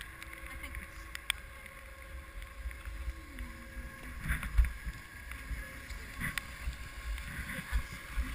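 Muffled rumble of skis sliding on packed snow and air on a skier-worn GoPro's microphone, with uneven knocks, the loudest about halfway and another near the end.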